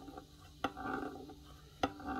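A violin tuning peg being turned by hand in the pegbox to wind on a new E string: quiet handling and turning noise with two sharp clicks, one about a third of the way in and one near the end.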